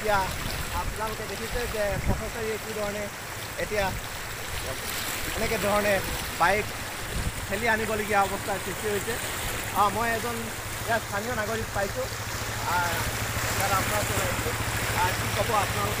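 Steady rush of floodwater running across a road, under people talking; a low steady hum comes in about twelve seconds in.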